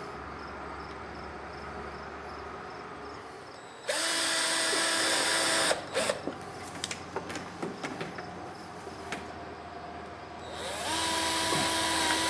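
Cordless drill driver driving screws through a garage door top seal into the door header, in two runs of about two seconds each. The first starts about four seconds in and stops sharply. The second winds up gradually near the end. Light clicks and knocks of handling come between them.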